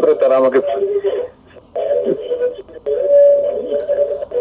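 A caller's voice coming over a telephone line, thin and muffled, speaking in short phrases with a brief pause about a second and a half in.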